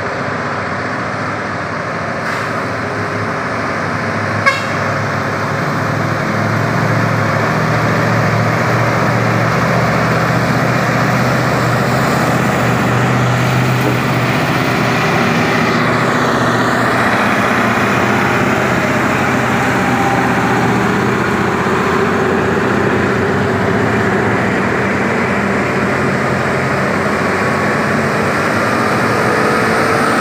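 Heavy diesel dump trucks (Mitsubishi Fuso) pulling uphill under load, a steady loud engine rumble that grows louder as one passes close. There is a single sharp click about four and a half seconds in.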